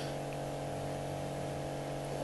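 Steady low electrical hum with a faint hiss: room tone, unchanging throughout.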